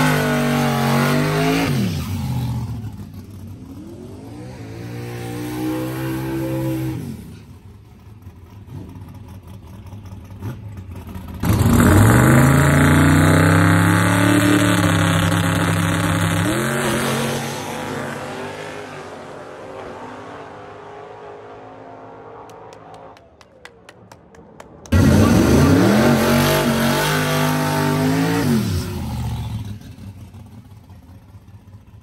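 Drag race cars' engines at full throttle in several separate runs. Each run starts suddenly and climbs, then falls away in pitch as the car pulls off. The longest run comes about eleven seconds in and lasts some five seconds, and another loud one comes near the end as a car does a smoky burnout.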